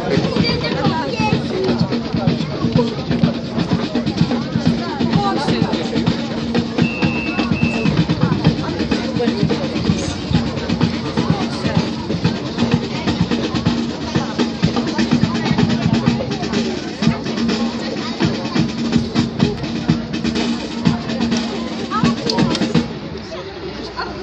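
Wind band playing with drums, a steady beat under a sustained band tone; the music stops about a second before the end.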